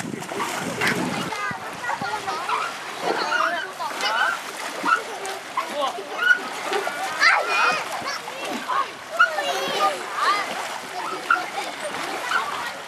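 Splashing of feet wading through shallow lake water, under a steady mix of people's and children's voices calling and chattering.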